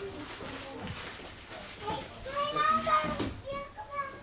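Visitors' voices, with a child's high-pitched voice calling out loudly for about a second, two to three seconds in.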